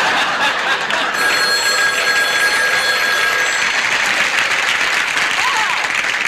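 Live studio audience laughing loudly. About a second in, a telephone bell rings for roughly two seconds and then stops.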